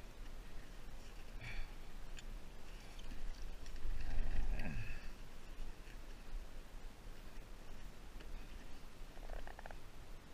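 Wind rumbling on an open microphone over choppy water, with a short low sound falling in pitch about four seconds in and a brief buzzy pulsing near the end.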